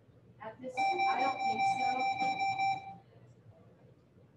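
A steady, high-pitched electronic buzzer tone that sounds for about two seconds, starting under a second in and cutting off, with faint voices beneath it.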